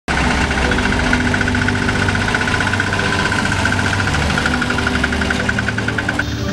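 Bajaj auto-rickshaw engine idling close by: a steady running hum with a fast, even ticking pulse over it.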